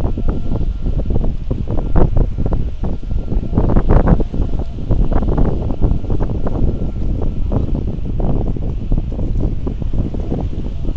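Strong wind buffeting the camera microphone in irregular gusts, a loud rough rumble that swells and drops, strongest about four seconds in.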